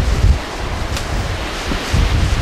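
Storm-force wind buffeting the microphone, a strong low gust at the start that eases after a moment. A brief sharp click comes about a second in.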